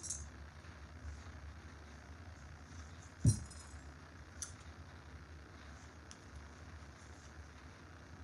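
Craft supplies being cleared off a table: a pot of brushes or paint is set down with one sharp knock and a brief clink about three seconds in, followed by a light click a second later.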